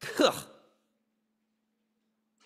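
A man's short, exaggerated "ugh" of disgust, falling steeply in pitch and over within about half a second. After it the room is quiet but for a faint steady low hum.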